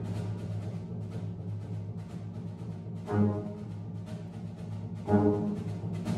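Youth brass choir playing a quiet passage. A low note is held throughout under soft brass chords that swell in about halfway and again near the end, with a light, evenly repeating tick running through it.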